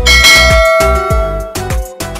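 A bright bell chime sounds at the start and rings out, fading over about a second and a half, over music with a steady deep kick-drum beat.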